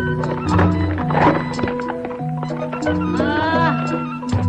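Traditional Cirebon gamelan-style theatre accompaniment: steady struck pitched notes moving in steps over low drum strokes and sharp clicks, with a noisy splash about a second in. Near the end a short, wavering, rising high cry slides over the music.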